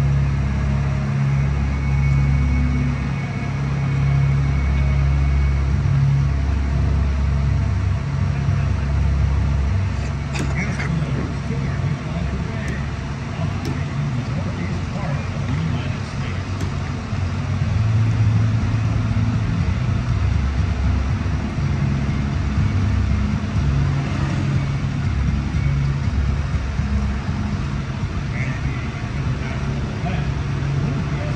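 A steady low mechanical hum, with scattered voices from a crowd.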